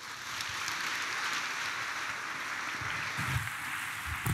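A congregation applauding with steady clapping.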